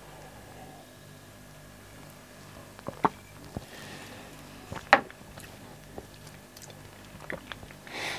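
A man sipping and swallowing lager and tasting it, with faint mouth sounds and a few light clicks, the sharpest about five seconds in, over a low steady room hum.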